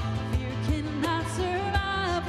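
Live worship song: a woman singing the melody over strummed acoustic guitar and a steady cajon beat.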